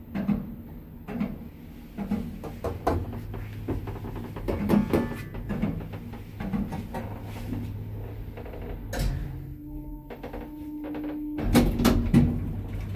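An Ayssa passenger lift car travelling between floors: a steady low hum from the drive under irregular clicks and knocks from the car. About ten seconds in, a steady tone sounds as the car arrives, and near the end comes a louder rush as the sliding cabin doors begin to open.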